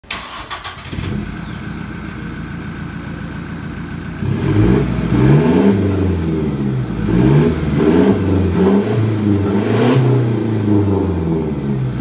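2016 Toyota Hilux turbodiesel running through an aftermarket turbo-back exhaust. It idles steadily for about four seconds, then is revved repeatedly and gets louder, the pitch rising and falling with each throttle blip.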